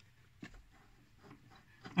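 Near silence: quiet room tone with one faint click shortly after the start.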